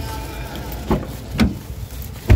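Two dull thumps, about a second in and half a second later, as a person gets into a car, over a steady low rumble.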